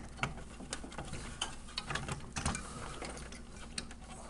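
Irregular clicks and knocks of a CPU cooler and its fittings being handled and fitted on a motherboard inside a computer case.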